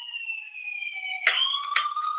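Emergency-vehicle siren wailing, heard over a phone line: its pitch glides slowly down, then jumps back up about a second and a quarter in and holds.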